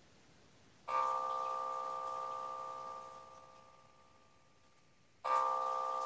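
A C major chord (C, E and G) played on a keyboard, sounded twice. The first starts about a second in and fades out over two and a half seconds; the second comes in near the end.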